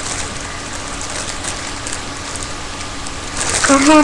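A steady, even hiss with no distinct events; near the end a woman starts singing in a helium-altered voice, holding level notes.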